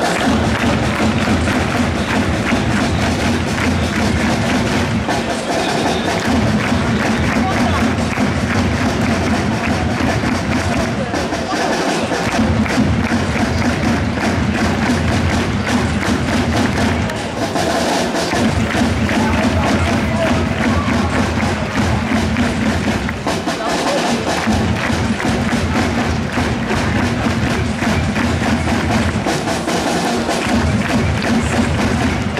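Football supporters in the stands beating drums and chanting together, a loud steady beat with a few short pauses.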